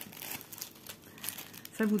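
Clear plastic packaging bag crinkling lightly and irregularly under the hands as a printed cross-stitch canvas is handled over it.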